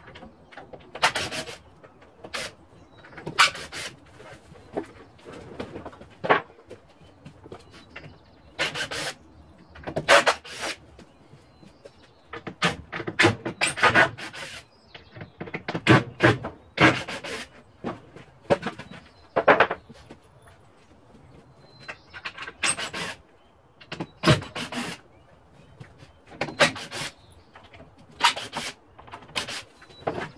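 Wooden boards being pried and pulled off a stall wall by hand. Repeated knocks, creaks and scrapes of wood come at irregular intervals, some sharp and loud.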